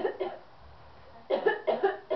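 A dog barking in short, sharp barks: two at the start, then three quick ones about a second and a half in.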